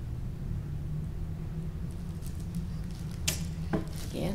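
Steady low hum under faint patter and crackle from about halfway through, then two sharp knocks near the end: a yellow plastic watering can being handled and set down after wetting the soil in a clay pot.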